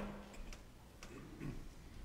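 Faint ticking and a few soft clicks over quiet room tone.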